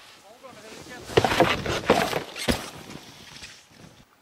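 A snowboard scraping and knocking against snow and a tree, with several sharp scrapes and knocks in the middle seconds and voices mixed in.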